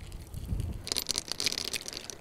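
Dry paper case of a shotgun cartridge being pulled open by hand, crinkling and crackling for about a second in the middle.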